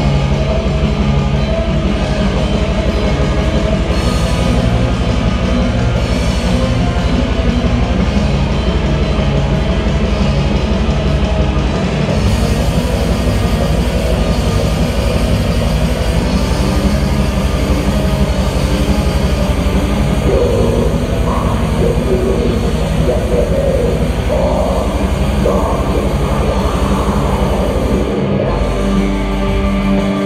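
Black metal band playing live: distorted electric guitars, bass and drums in a dense, unbroken wall of sound. A vocal line comes in over the band in the last third.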